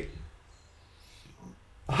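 A brief pause in a man's talk: his voice trails off at the start, then near silence with one faint short sound about a second and a half in, and he starts speaking again near the end.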